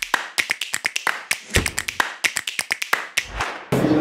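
Percussive transition sound effect: a quick, irregular run of sharp clicks and taps, with two low thumps along the way.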